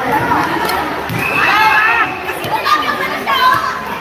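Players' voices shouting and calling out in a large, echoing sports hall, over background chatter. There is a long, high-pitched call about a second in and a shorter one near the end.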